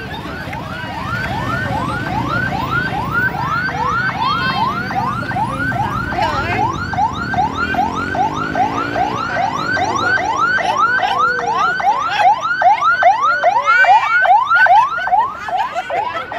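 Ambulance siren on a fast yelp, about three rising sweeps a second, growing louder as the ambulance draws near and comes alongside.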